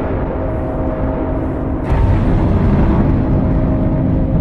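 Dark cinematic soundtrack music over a deep, continuous rumble, with a few held tones above it. A new hit comes in about two seconds in, and the rumble swells.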